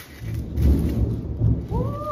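A clap of thunder: a long, low, loud rumble that builds a fraction of a second in and is loudest around the middle, heard from inside a house during a storm.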